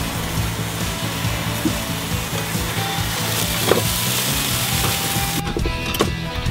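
Boerewors sizzling and crackling in a flip grid over hot coals, a dense, steady hiss that cuts off shortly before the end. Background music with steady low notes plays underneath.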